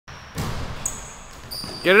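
A basketball being dribbled on a hardwood gym floor, a quick run of bounces in the first second.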